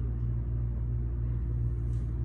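Steady low rumble of a building's ventilation system, even and unbroken.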